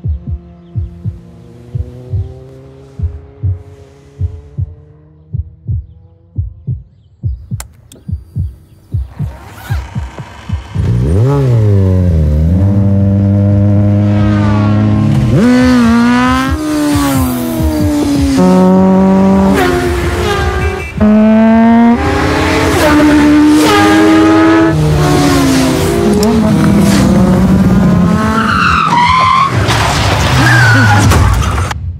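A slow, heartbeat-like low thumping under soft music. About ten seconds in, a sport motorcycle engine takes over loudly, revving hard and climbing through the gears, the pitch rising and dropping at each shift.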